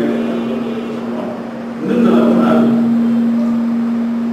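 A man lecturing into a microphone, his voice heard mainly about halfway through, over a loud steady low hum that runs throughout.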